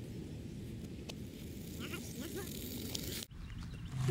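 Faint outdoor background noise with a steady low rumble and a few light ticks; it drops out abruptly a little after three seconds in.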